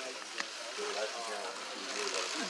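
Faint voices of people talking in the background, with one light click about half a second in.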